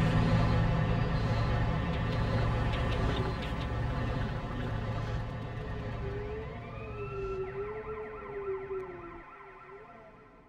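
Soundtrack fading out: sustained low tones die away slowly. From about six seconds in, a wavering wail like a distant siren rises and falls over the last few seconds.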